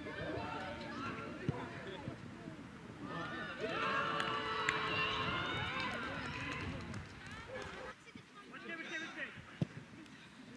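Several voices of players and spectators shouting and cheering over each other on a football pitch, louder for a few seconds in the middle, with two sharp knocks. It all drops quieter after about eight seconds.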